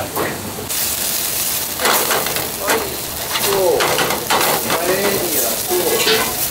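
Diced scallops sautéing in a small steel frying pan over a gas burner, sizzling steadily while a spatula stirs them around the pan. The sizzle gets louder about a second in.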